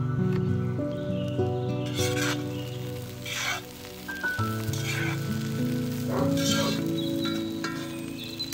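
Calm instrumental music with sustained notes, and from about two seconds in, onions sizzling in oil in a wok, swelling about every one and a half seconds as a metal skimmer stirs them.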